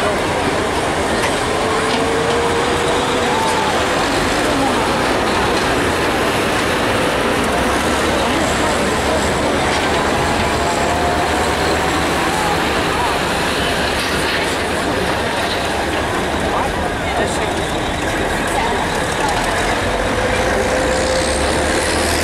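Semi truck's diesel engine under full load, running loud and steady as it drags a weighted pulling sled down a dirt track, with a crowd's voices underneath.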